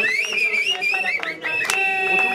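A man singing and chanting loudly among a small group, his voice rising and falling in high, wavering tones.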